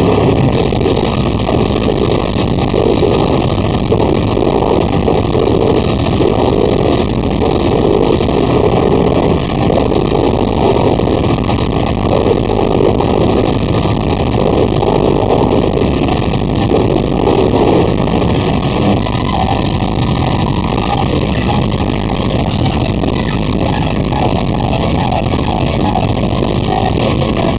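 Metal band playing live, loud and heavily distorted: a dense, steady wall of electric guitars and drums with no single beat or voice standing out.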